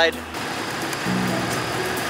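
A vehicle engine idling steadily during a jump-start, under an even hiss of outdoor noise, with a faint low hum for about half a second.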